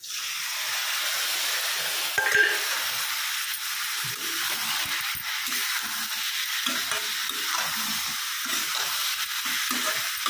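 Chopped tomatoes hitting hot oil in a kadhai of drumstick and potato curry, setting off a steady sizzle that starts suddenly. There is a brief clatter about two seconds in, then a spatula stirring and scraping the vegetables through the sizzle.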